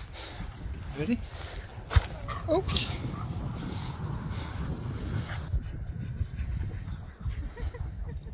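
A husky makes short vocal calls: one rising call about a second in and a wavering one around two and a half seconds in. There is a sharp knock about two seconds in, over a low rumble of wind on the microphone.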